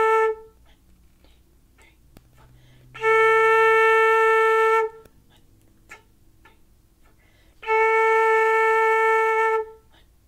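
Silver concert flute playing the note A as steady held whole notes with rests between. A note ends just as the sound begins, then two more are each held about two seconds, with about three seconds' gap between them.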